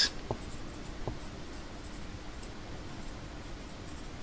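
Marker pen writing on a whiteboard: faint scratching strokes as a word is written out.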